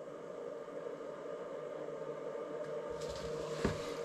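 Faint steady hum and hiss, with one soft click near the end.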